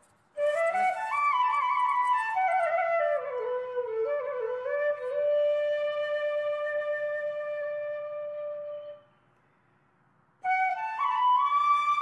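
Background music: a solo flute-like melody that winds downward into a long held note, breaks off for about a second and a half of silence, then starts a new rising phrase near the end.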